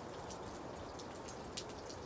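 Quiet outdoor background: a steady faint hiss scattered with light, irregular ticks, like drips of water.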